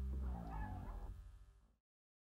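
Short outro audio sting over a fading low held chord: a brief wavering pitched sound comes in about half a second in, and the whole sound cuts off abruptly near the end.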